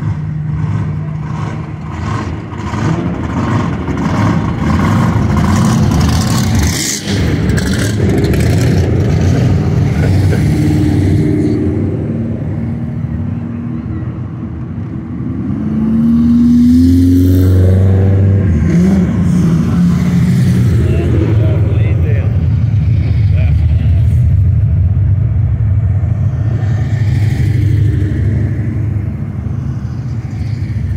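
Cars' engines rumbling as they cruise past, one revving up with a rising pitch about halfway through, with voices in the crowd.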